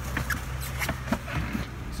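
Truck heard from inside its cab: a steady low rumble, with a few short knocks and clicks over it.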